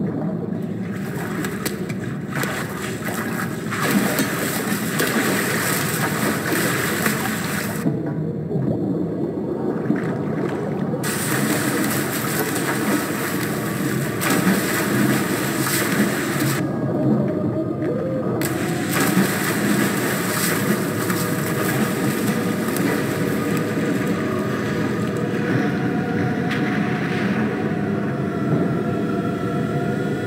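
Bathwater splashing and churning as a person is held under in a bathtub and thrashes. Twice the sound turns muffled and dull, as heard from under the water. Steady tones come in over the last several seconds.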